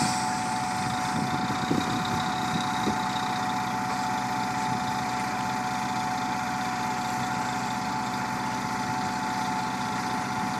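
Engines of an asphalt paver and the dump truck feeding it running steadily while the paver lays asphalt, with a steady high hum over the engine drone. A brief sharp click right at the start.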